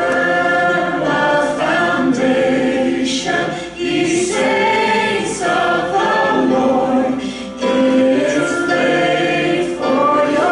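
A group of voices singing a slow song together, with notes held for about a second each.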